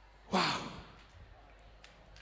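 One brief, breathy voice sound falling in pitch, a sigh-like exhale picked up by a stage microphone about a third of a second in, over a faint steady low hum from the sound system.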